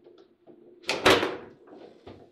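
A loud, sharp bang from the table football table about a second in, the ball or a rod striking the table hard during play, ringing out briefly, among lighter clicks of ball and rods.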